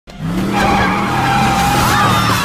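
A vehicle's tyres squealing in a skid over its running engine, a steady high squeal that starts suddenly and holds.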